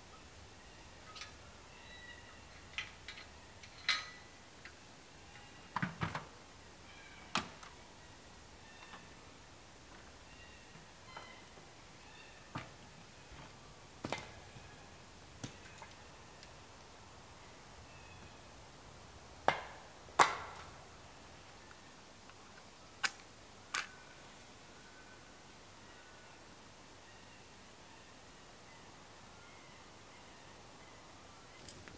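Scattered sharp knocks and clunks of camp gear being handled around a four-wheel drive, a few seconds apart and heard from some distance, the loudest two close together about twenty seconds in. Faint short bird chirps sound between them.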